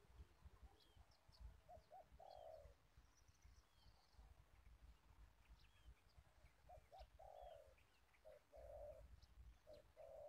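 Dove cooing faintly in short phrases, each two brief notes and then a longer one, heard three times, with small birds chirping thinly in the background.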